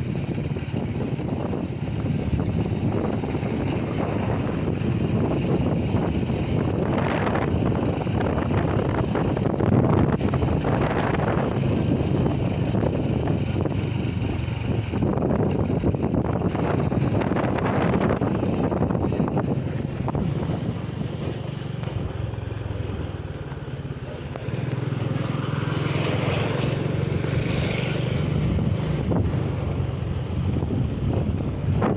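Motorcycle riding along a road, its engine running steadily with wind buffeting the microphone. The engine eases off briefly about two-thirds of the way through, then picks up again.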